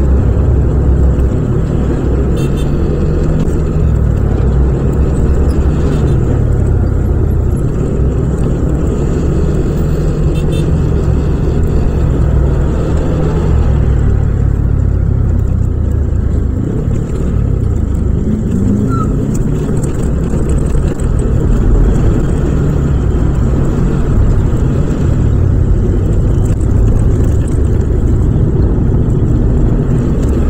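Yamaha Aerox 155 scooter's single-cylinder four-stroke engine running while riding in traffic, its note rising and falling with the throttle. Other traffic engines sound around it.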